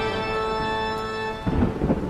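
Segment-intro sound effect of thunder and rain under a held organ-like chord. The chord cuts off about one and a half seconds in, and more thunder rumbles follow.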